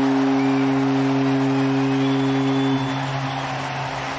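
Stadium home-run horn sounding one long, steady low blast over a cheering crowd, cutting off about three seconds in while the cheering carries on.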